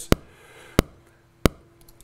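Metronome click from a Cubase click track playing an MPC-style click sample: three sharp clicks evenly spaced about two-thirds of a second apart.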